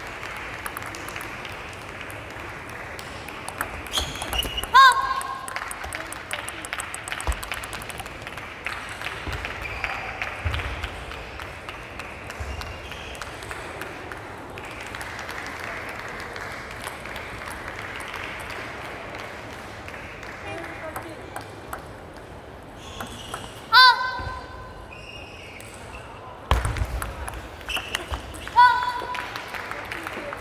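Table tennis hall ambience with a steady background murmur, broken three times by a short, loud, high-pitched squeal: about five seconds in, loudest just before the end, and again at the very end.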